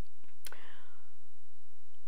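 A speaker's lip or mouth click about half a second in, followed by a short, soft breath intake, picked up by a close clip-on microphone over a steady low electrical hum.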